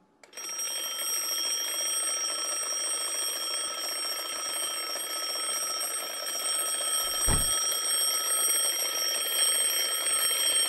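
Twin-bell mechanical alarm clock ringing without a break, starting just after the beginning, with a short low thump about seven seconds in.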